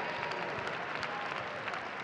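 Congregation applauding: many hands clapping in a dense, steady patter that eases off slightly.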